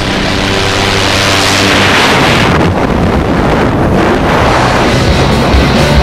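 Loud rush of wind and airflow as a tandem pair leaves the aircraft door into freefall, swelling to a peak about two seconds in, under dubbed background music.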